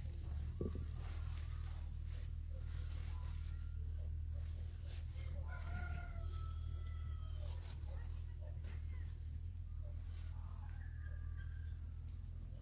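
A faint rooster crowing, one long drawn-out call about halfway through and a shorter call near the end. Under it runs a steady low hum, with soft clicks and rustles of leafy greens being handled.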